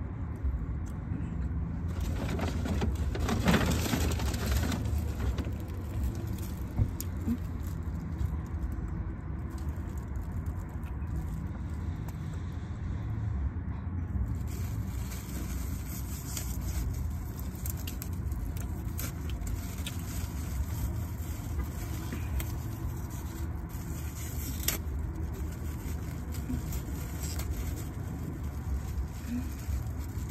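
Steady low rumble inside a car cabin, with a burst of rustling a couple of seconds in and a few small clicks and knocks while someone eats.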